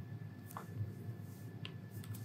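Quiet room tone with a low steady hum and a couple of faint, short clicks, about a second apart.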